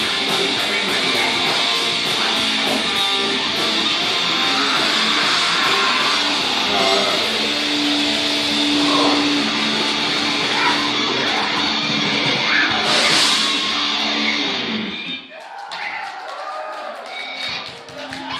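Live heavy metal band playing loud, with distorted electric guitars and drums. The full band stops abruptly about fifteen seconds in, leaving a quieter, sparser stretch.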